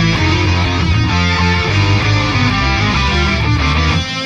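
Progressive death metal recording with the drum track removed: distorted electric guitars and bass guitar playing a heavy riff, with no drums.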